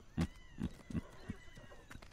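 Faint horse sounds: a few sharp hoof clops, one louder just after the start, under a thin, high, drawn-out whinny.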